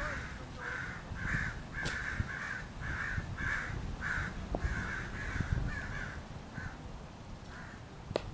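A bird calling over and over in short caw-like notes, two to three a second, stopping about seven seconds in, over a low rumble. A single sharp click comes about two seconds in.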